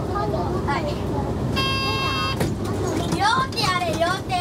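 Inside a moving city bus: steady low engine and road rumble under people's voices, with a short steady pitched tone lasting under a second about halfway through.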